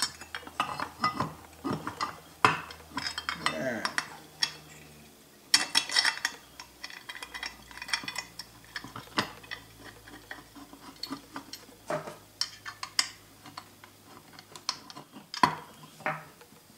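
Small metal parts clinking and tapping as the bracket, bolt and washers are handled and fitted onto an air pump, in irregular knocks with a denser cluster about five to six seconds in.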